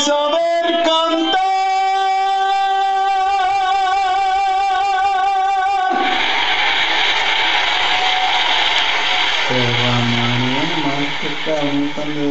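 The end of a song: a singer holds a long final note with a steady vibrato. About six seconds in, a loud even noisy wash takes over, and a man's voice starts speaking over it near the end.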